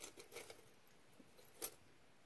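Faint clinks of small pieces of metal costume jewelry being handled, with one sharper clink about one and a half seconds in.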